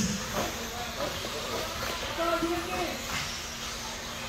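Steady hiss of an indoor RC off-road track with the cars running, with a faint distant voice about two seconds in.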